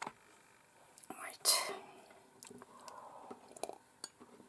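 A person's breathy, whispered vocal sound: a short sharp breath or whisper about a second in, then quiet, murmured whispering, with a few faint clicks.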